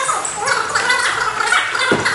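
A man talking in Russian in a rough voice, with a single short thud near the end.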